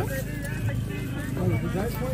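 Voices with background music underneath.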